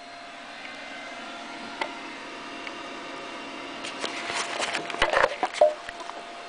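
Faint steady room hum, then about two seconds of handling noise, rubbing and small knocks, as the camera is settled into a stand made from a cut-off rubber radiator hose end.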